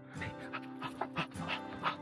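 A dog breathing in short, quick, irregular puffs, panting or sniffing, over steady background music.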